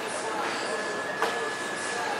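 Metal shopping cart rolling along a smooth store floor: a steady rattle of wheels and wire basket, with one small knock about a second in.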